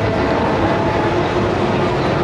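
Steady background din of a busy exhibition hall, holding at an even level throughout.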